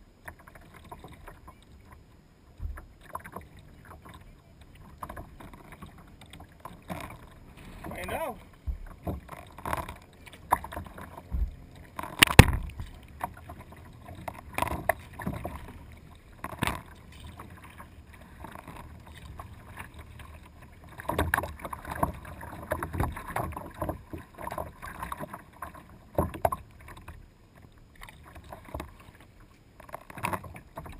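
Sea kayak being paddled: irregular splashes of the paddle blades entering and leaving the water, and water slapping the hull, heard from a camera on the foredeck just above the water. The loudest splash or knock comes about twelve seconds in.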